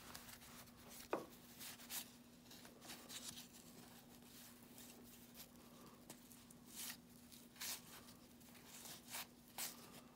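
Baseball trading cards being flipped through by hand: faint papery slides and soft flicks, scattered about once a second, over a faint steady hum.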